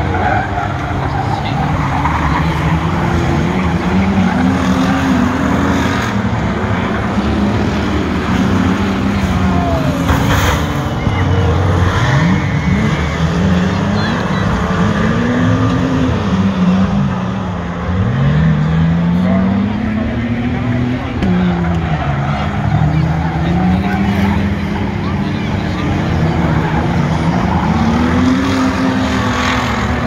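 A pack of streetstock race cars running hard around a dirt oval, the engine note repeatedly rising and falling as the cars accelerate and lift off.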